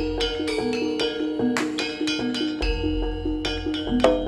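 Javanese jaranan ensemble music: rapid repeating metallic gong-chime notes over deep drum strokes, with one sharp crash about a second and a half in.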